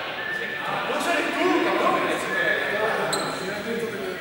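Many young people's voices talking and calling over one another, echoing in a large sports hall, with a short sharp knock about three seconds in.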